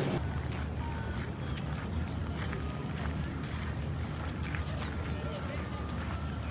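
Outdoor ambience: indistinct background voices over a steady low rumble, with a few faint ticks.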